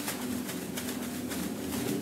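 Clear plastic bags swung through the air, making soft swishes and rustles about two or three times a second over a low steady hum.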